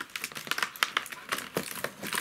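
Printed cardboard perfume countdown calendar being handled, its card crinkling and rustling in a quick, irregular run of crackles.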